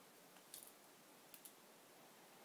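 Near silence: faint room tone with a few soft clicks, one about half a second in and two in quick succession past the middle.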